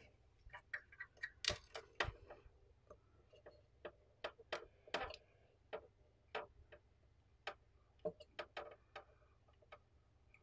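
Sparse, irregular light clicks and taps of a hot glue gun being handled and its trigger worked against a plastic speaker enclosure, with a couple of louder knocks in the first two seconds.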